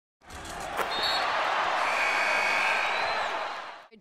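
Basketball court noise: a steady wash of noise with one sharp thump about a second in and a few brief high squeaks, fading out at the end.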